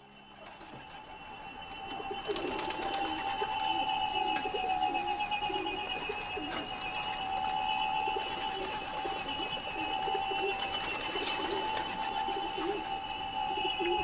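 Domestic pigeons cooing in short repeated calls under a steady two-note whistling drone, the sound of pigeon whistles carried by birds of a flock in flight. It fades up over the first couple of seconds.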